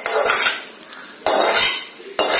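Metal spoon scraping and clinking against a cooking pot of curry, in two half-second scrapes about a second apart.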